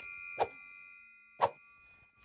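A hand triangle struck once, ringing with a bright, shimmering chime that slowly fades. Two brief short sounds cut in as it rings, one under half a second in and another about a second and a half in.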